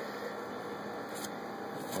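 Steady background noise, a low even hiss and hum, with two faint soft clicks in the second half.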